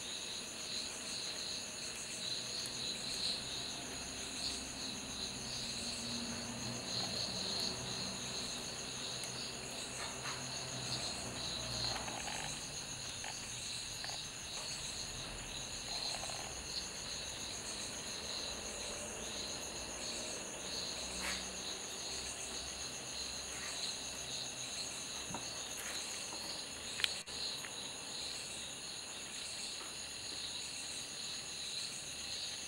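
Steady high-pitched chirring of insects, crickets by the sound of it, with a faint regular pulse, and one brief sharp click near the end.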